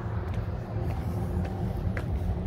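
High-heeled dress sandals clicking on concrete pavement in a walking rhythm, about one step every half second, over a steady low rumble.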